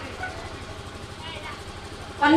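A vehicle engine running low and steady in the background, with faint voices.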